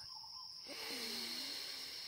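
Steady high-pitched chirring of insects, with a soft breath through the nose about halfway through.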